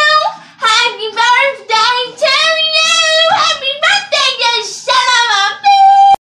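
A single high, young voice singing a birthday song, unaccompanied, in short sung phrases. It ends on a long held note near the end.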